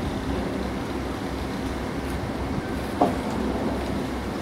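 Steady low drone of a crane engine running, with one sharp metallic clank about three seconds in from a tool striking the steel bridge girder.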